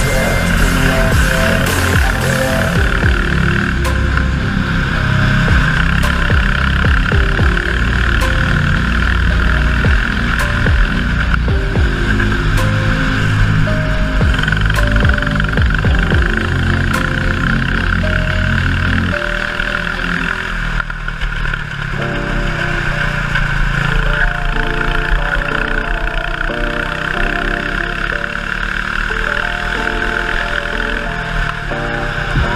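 Background music with a steady beat, changing to a new section about nineteen seconds in.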